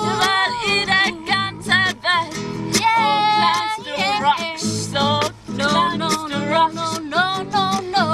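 Acoustic guitar strummed in a steady rhythm, with a woman singing along.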